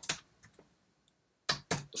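Keystrokes on a computer keyboard: a few light clicks at the start, a pause, then a quick cluster of louder clicks about one and a half seconds in.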